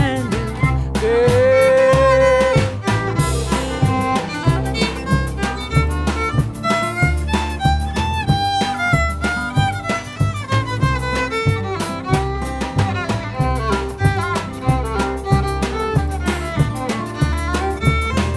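Honky tonk band's instrumental break: a five-string fiddle plays the lead over upright bass, drums and strummed rhythm guitar, holding one long note about a second in before running on with the melody.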